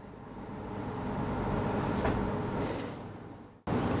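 Rustling, shuffling handling noise as the camera is picked up and moved. It swells over a couple of seconds, fades, and cuts off suddenly near the end.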